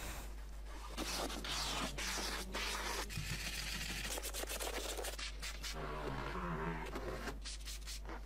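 Scrubbing and wiping car interior upholstery and floor mat with a sponge and cloth: repeated, irregular rubbing strokes.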